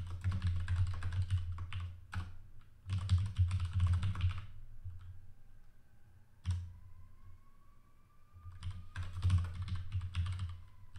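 Computer keyboard typing in quick bursts of keystrokes, with a pause of a few seconds in the middle broken by a single keystroke. During the pause a faint tone slowly rises in pitch.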